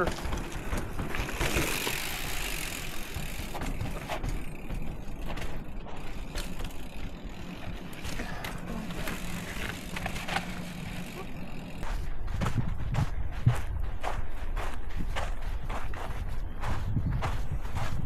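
Mountain bike riding down a rocky, sandy trail, its tyres crunching over sand and rock. In the last third come footsteps crunching on the gritty trail.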